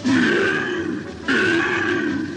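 Cartoon dog's gruff vocal calls, twice: the first about a second long, the second starting just past the middle.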